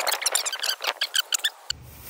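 Wet skin and feathers being torn off a marsh hen by hand, a quick run of short crackling squeaks that stops near the end.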